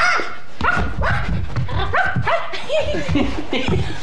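Two people imitating puppies, giving short high rising yaps, two or three a second, with a laugh near the end.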